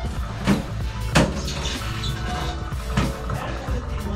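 Background music over faint gurgling of hot water draining down a hair-clogged bathtub drain, with a few short knocks. The gurgle is taken as a good sign that the clog is clearing.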